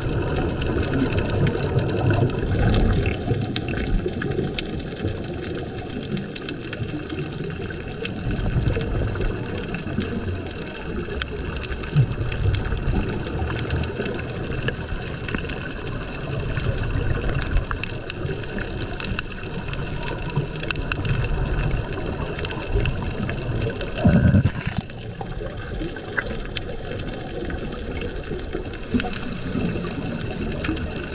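Underwater water noise picked up by a camera below the surface: a muffled, steady wash with irregular low rumbling surges and faint clicks, and one louder surge about six seconds before the end.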